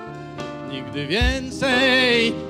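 Live band with saxophone, clarinet and accordion playing a slow song; about a second in, a man's singing voice slides up into a held note with vibrato, over a low beat.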